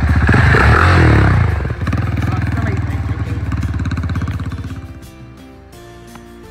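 Husqvarna 701 single-cylinder motorcycle engine running as the bike rides past close by, loudest in the first second or so, then fading away about four to five seconds in. Music takes over near the end.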